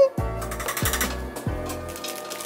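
Background music with a deep bass note that drops in pitch, repeating about every two-thirds of a second.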